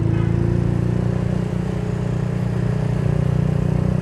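Suzuki Thunder 125's single-cylinder four-stroke engine running steadily under way, heard from the rider's seat. The level eases slightly around the middle.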